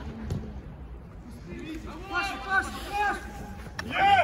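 Men's voices calling out across an outdoor football pitch during play, loudest a couple of seconds in, with a single dull thud just after the start.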